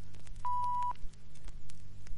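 A single short beep, one steady mid-pitched tone lasting about half a second, over a faint low hum and scattered clicks. It is a filmstrip advance tone, cueing the change to the next slide.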